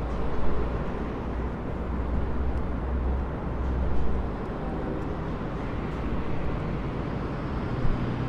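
Steady city street ambience with a low traffic rumble.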